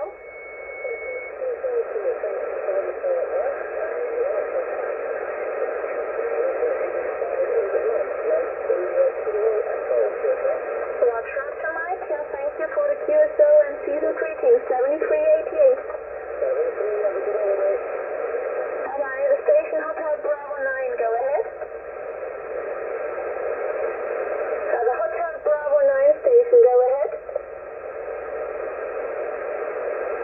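Shortwave single-sideband voice signals on the 40-metre band received on a Yaesu FT-991A: several amateur stations calling at once in a pile-up, their voices overlapping and garbled in narrow, tinny radio audio. A thin steady whistle sounds in the first second.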